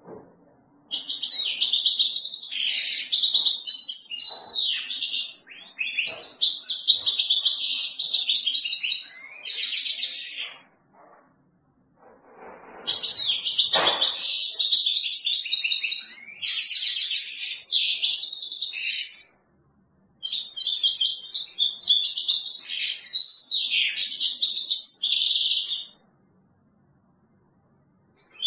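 Caged European goldfinch singing: four long runs of rapid, high twittering song, each several seconds long, with short pauses between them. A single knock sounds about halfway through.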